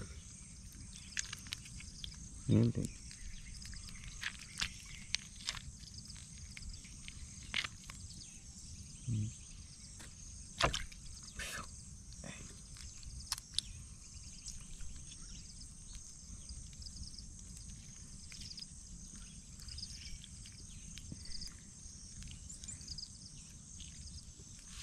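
Hands cleaning a plucked, singed bird carcass over a plastic basin of water: small splashes, drips and wet handling clicks at irregular moments. Steady high insect chirring runs underneath, and a short low hum of a voice breaks in twice.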